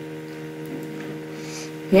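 Steady electrical mains hum: several low tones held level, with no change.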